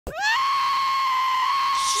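A cartoon goat's long, held scream: it sweeps up sharply at the start, then holds one steady, loud pitch.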